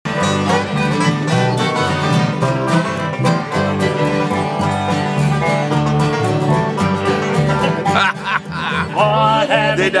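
Live acoustic string band of strummed guitars playing an upbeat country tune. A voice comes in singing near the end.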